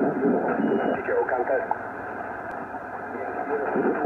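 Shortwave transceiver receiving a weak single-sideband voice transmission on the 40-metre band: narrow, hissy voice audio through static, sinking to mostly noise for a second or so past the middle before the voice comes back.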